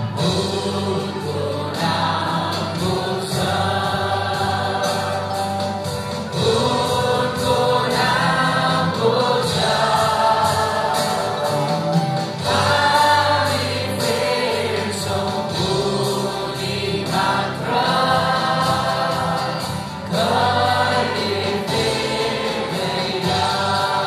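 Live worship band singing a Nepali Christian worship song: several voices, men's and women's, singing together in phrases over strummed acoustic guitar and a steady low accompaniment.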